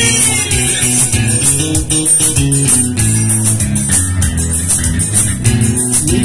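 Live forró band playing an instrumental passage between sung verses: a bass line in steady held notes under a fast, even beat with bright high ticks.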